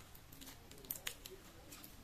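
Faint clicks and scratches of fingernails picking at the sealing tape on a plastic blush compact, with two sharper clicks about a second in.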